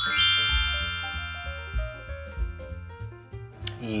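Background music cue: a rising sweep into a long ringing chord that slowly fades, over a short line of low notes.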